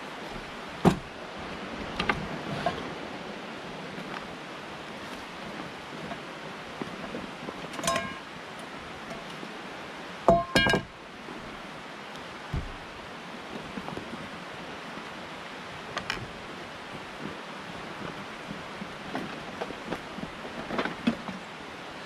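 Steady rush of a river with scattered knocks and clinks of camp cookware and gear being set down on a wooden picnic table. The loudest is a pair of clanks about halfway through.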